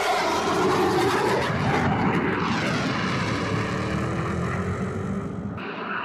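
A jet aircraft's engine roar, loud and steady, with a whining tone that slowly rises, cutting off abruptly near the end.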